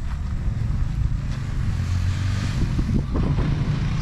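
Wind buffeting the camera microphone, a steady low rumble that swells slightly in a gust midway.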